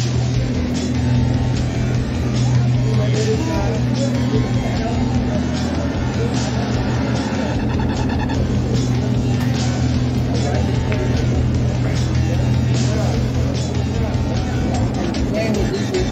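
Busy bar-room background: music playing with people talking over it, under a steady low hum and scattered short clicks.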